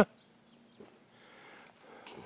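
Quiet outdoor ambience in a pause between speech: a faint, steady, high-pitched thin tone with a few soft ticks.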